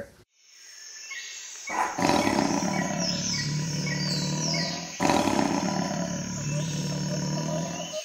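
A long, loud roar in the style of a big cat, set to a tabby house cat opening its mouth wide. It comes in suddenly about two seconds in and starts afresh about five seconds in.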